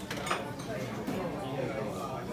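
Busy café background: diners' chatter with a few clinks of dishes and cutlery.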